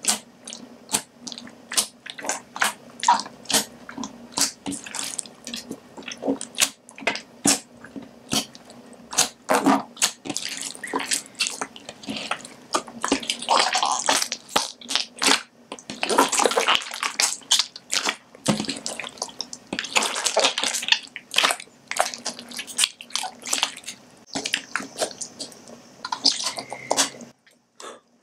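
Hands squeezing and kneading a foamy slime of clear slime mixed with a fizzing bath bomb. Wet squishing comes with many irregular sharp pops from trapped air bubbles bursting, and with a few longer squelching spells.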